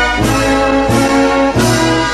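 Brass-led processional march music with a steady beat, about three accented beats every two seconds, over sustained chords.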